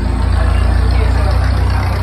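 A steady, loud low rumble, like a running engine or machinery hum, with faint voices mixed in.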